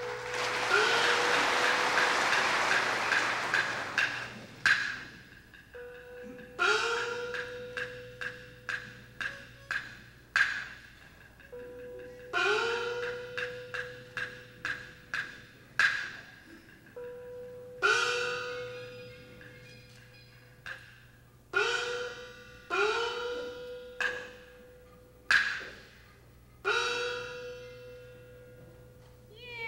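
Peking opera percussion ensemble playing an interlude: a crashing wash for the first few seconds, then sharp clapper and drum clicks punctuated by ringing small-gong strikes whose pitch slides upward. The strikes come every few seconds, closer together near the end.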